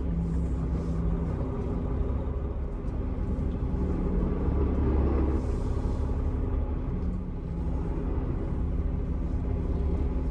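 Semi-truck diesel engine running at low speed as the truck rolls slowly through a parking lot, heard from inside the cab as a steady low rumble. It grows a little louder about halfway through.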